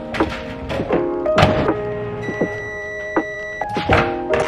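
Microwave oven door handled and shut with a thunk, plus a sharp knock about a second and a half in, over background music. A steady high beep lasts over a second in the middle.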